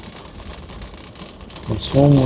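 Low, steady rumble of a shopping cart's wheels rolling over a hard store floor, with a man's voice starting near the end.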